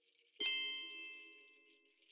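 A single ding sound effect about half a second in, ringing on and fading away over about a second and a half. It marks the reveal of the answer on screen.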